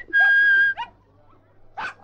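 A person whistling for a dog: one long steady whistled note with a short note after it, the call for a missing dog. A dog gives a short bark near the end.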